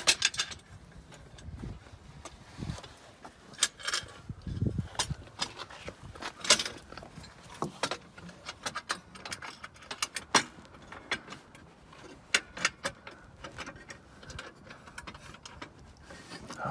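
Irregular metallic clinks and taps of an aluminium A-arm guard and its hook clamps being worked over an ATV's A-arm by hand, with a few duller knocks in the first five seconds.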